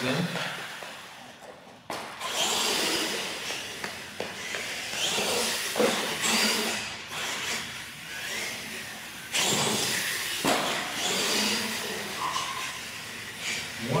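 Radio-controlled monster truck driving on a concrete floor: its electric motor whine and tyre noise swell and fade with the throttle, with sudden knocks about two and nine seconds in.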